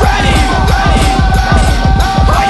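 Hip hop backing track with a fast, heavy beat under a long held high synth tone and gliding, scratch-like sounds, without vocals.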